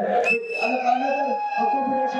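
A long, high whistling tone that dips slightly in pitch as it starts and then holds steady, heard over a man speaking into a microphone.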